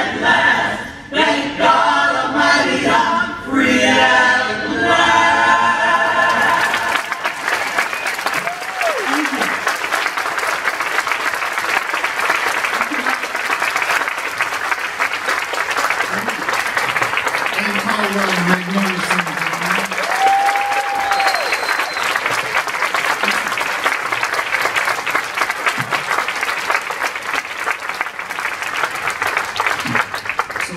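An a cappella vocal group singing in close harmony, ending about seven seconds in. An audience then applauds steadily for the rest of the time, with a few cheers rising over the clapping.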